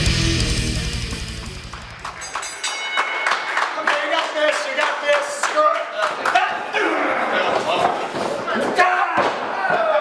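Heavy metal music fading out over the first two seconds, then live sound from a pro wrestling ring in a hall: voices of the crowd and wrestlers, with thuds of bodies on the ring.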